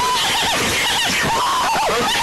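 A loud voice-like call whose pitch wobbles and swoops rapidly up and down, warped by a 'loud ripple' pitch-warble audio effect.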